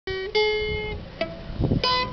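Acoustic guitar picking a short riff of four single notes, each left to ring before the next.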